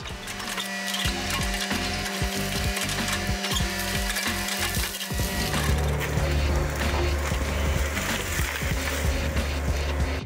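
Compact tracked excavator working: engine and hydraulics running as it pushes over trees and rips out a stump, with wood and roots cracking. Background music plays underneath. The machine sound turns deeper and heavier about five seconds in.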